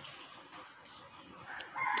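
Faint background, then a rooster starts crowing near the end, loud and sudden.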